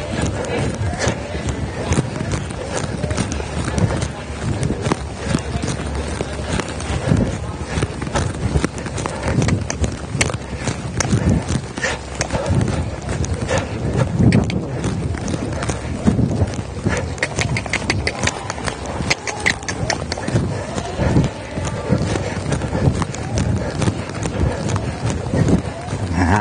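A horse's hoofbeats on dirt arena footing, repeating in a steady rhythm as the mare is ridden forward.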